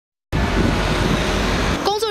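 Loud, steady outdoor background noise, a low rumble with hiss, that cuts in suddenly just after the start. A voice begins right at the end.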